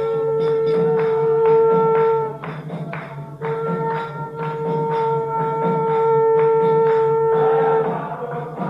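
Conch shell blown in two long, steady blasts, the first breaking off about two seconds in and the second starting a second later and stopping near the end, over a steady beat of percussion strikes about two a second. The conch is sounded as the temple altar curtains open for worship.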